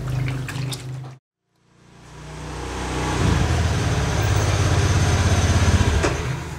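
Water sloshing in a plastic basin as clothes are washed by hand. The sound cuts out about a second in, then a steady low rumbling noise fades in and grows louder to the end.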